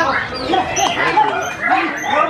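Several white-rumped shamas singing over one another in quick, varied whistled phrases, with people talking underneath.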